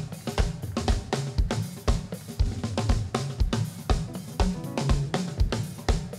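Upbeat praise music driven by a drum kit, with a kick drum on a steady beat about twice a second, snare and cymbals over a bass line.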